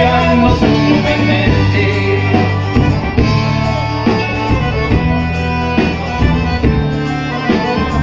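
A live folk band playing an instrumental passage over a PA: guitars and bass under a sustained melody, with a steady beat.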